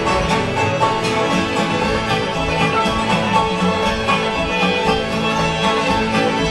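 Live acoustic folk band playing an instrumental tune: several fiddles over strummed guitar, banjo and piano, with fuller bass notes coming in at the start.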